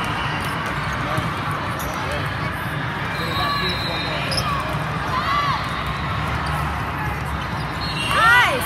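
Indoor volleyball rally: a volleyball being hit, sneakers squeaking on the court, and steady crowd chatter behind them. The clearest squeak comes about five seconds in.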